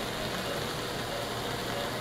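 Steady hum and hiss of operating-room equipment, with no distinct knocks or events.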